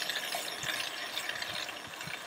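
Bike chain running backwards through a clip-on chain cleaner's degreaser bath as the cranks are turned, a wet swishing rattle with the freehub's pawls ticking.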